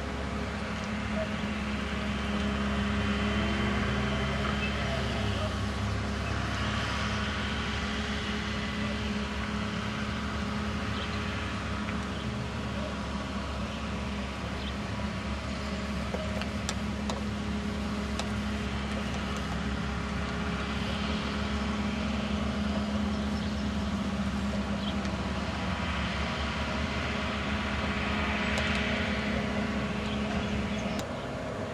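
A steady mechanical hum, like a motor running, holding one pitch and an even level throughout, over outdoor background noise.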